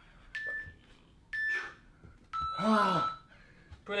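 Interval timer beeping as the exercise ends: two short, high beeps about a second apart, then a longer, lower beep. A man's groan of effort sounds over the long beep.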